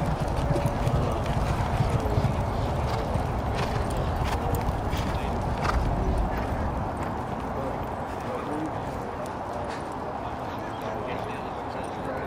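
Thoroughbred horses' hooves striking a dirt training track at a jog, an uneven patter of hoofbeats, over a low rumble that eases about two-thirds of the way through.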